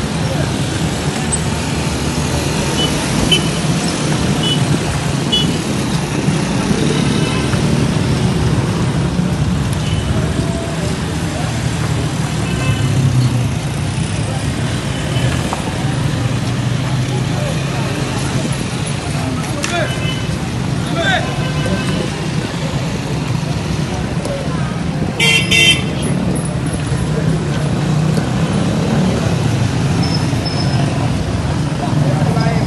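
Street noise: a steady low rumble of idling motorcycle engines and traffic with indistinct voices, and one short vehicle-horn toot near the end.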